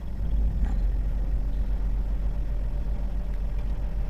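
A steady, loud low rumble with no clear events in it, like a background engine or traffic noise.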